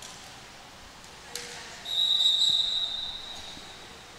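A single volleyball bounce on the hardwood gym floor, then the referee's whistle in one steady blast of about a second and a half. The whistle stops play for a check on whether the correct Quakertown player is serving.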